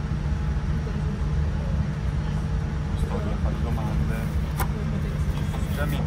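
Boeing 787 passenger cabin noise: a steady low rumble with a faint steady hum, under faint voices of other passengers. Two short clicks fall about three and four and a half seconds in.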